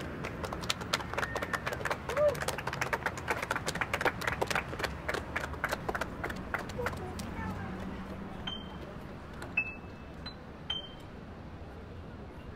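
Outdoor ambience with faint voices, broken for about six seconds by a rapid, irregular run of sharp clicks or taps. Near the end come three or four short, high pings.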